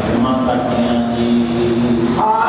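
A voice chanting in long, steady held notes, with a constant rushing noise underneath.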